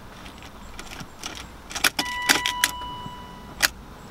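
Keys jangling and several sharp clicks in the ignition of a BMW E36, with a steady electronic beep from about halfway in. The engine does not crank or run: the battery is dead after the car sat unused for a long time.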